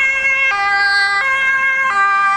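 Two-tone siren of a Dutch fire engine on an emergency run, alternating between a high and a low tone about every three-quarters of a second.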